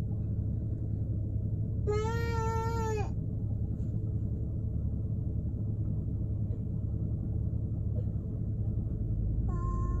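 Steady low rumble inside a car. About two seconds in comes a single drawn-out, high-pitched vocal call lasting about a second.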